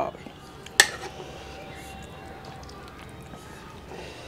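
A single sharp clink of a steel ladle against a steel plate about a second in, as mutton curry is served over rice.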